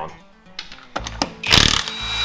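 Cordless impact wrench hammering on a car's wheel lug nut in one short burst a little past halfway, with a thin high whine starting as it stops, over background music.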